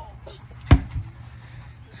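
A sledgehammer strikes a large rubber tractor tire once, about three-quarters of a second in: a single sharp thud with a smaller knock just after.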